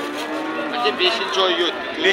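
Cattle mooing: one steady, even-pitched low call in the first part, lasting under a second.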